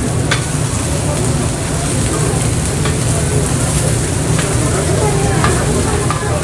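Korean pancakes (jeon) sizzling in oil on a flat-top griddle, with about four short sharp metal taps as a knife and scraper cut and lift the pancake against the griddle plate.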